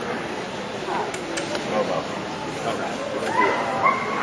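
Steady chatter of many voices in a show hall, with a few short, high rising calls near the end that sound like a dog yipping.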